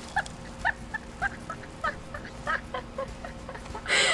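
Two young women's stifled giggling: a string of short, high-pitched squeaky laughs.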